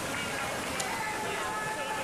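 Indoor swimming pool ambience: distant crowd chatter and voices over a steady wash of splashing from swimmers racing down the lanes.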